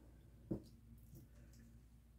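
Near silence: room tone, broken by one soft, short knock about half a second in.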